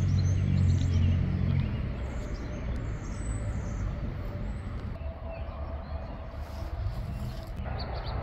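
Outdoor background sound: a low steady hum that fades out after about a second and a half, then quieter background noise with a few faint high bird chirps.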